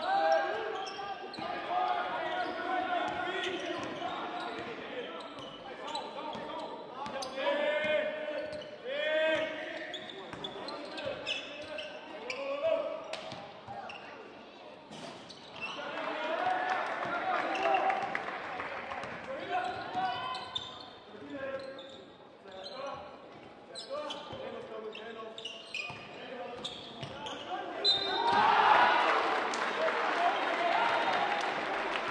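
Basketball game in a sports hall: the ball bounces on the wooden court while players and the bench call out and shout. Crowd noise swells twice, loudest near the end.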